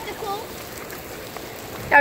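Fountain water spraying in a steady hiss that sounds like rain, with a brief bit of a child's voice at the start.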